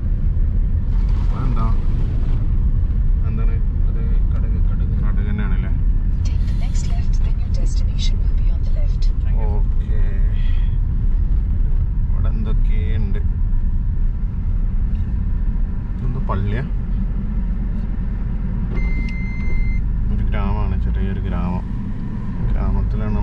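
Car driving on a rough unpaved road, heard from inside the cabin: a steady low rumble of engine and tyres. A brief high beep sounds near the end.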